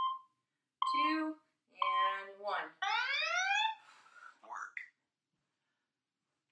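Workout interval timer giving three short beeps at one pitch, a second apart, mixed with voice-like sounds. It ends in a longer sound that slides upward in pitch.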